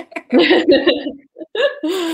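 Women laughing in two bursts: a loud, pulsing laugh about a quarter of a second in, and another beginning just before the end that trails down in pitch.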